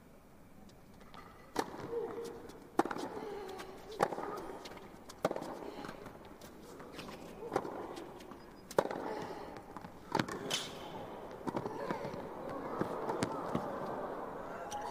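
Tennis rally: a serve about one and a half seconds in, then sharp racket-on-ball strikes roughly every 1.2 seconds, some with a player's short grunt. Crowd noise swells over the last few seconds as the rally goes on.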